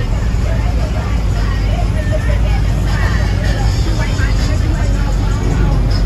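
Car engines running at low speed as cars roll out, a steady low rumble, with people talking over it.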